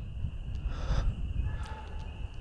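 Outdoor ambience: low wind rumble on the microphone with a steady high-pitched insect drone.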